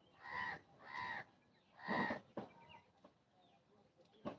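A bird calling three times, about a second apart, the third call the longest and loudest.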